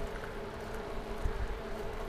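Steady whirring hum from a bicycle rolling along an asphalt road, with wind rumbling on the microphone.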